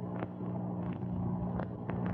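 A low, steady hum with a few faint clicks scattered through it.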